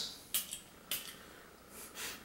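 Two short hisses of a glass perfume spray bottle being pumped, about half a second apart, then a faint sniff near the end.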